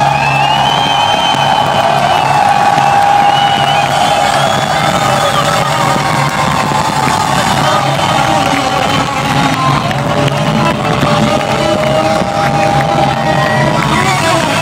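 Live electric guitar holding long, slowly bending sustained notes over a cheering, whooping rock-concert crowd, recorded from within the audience.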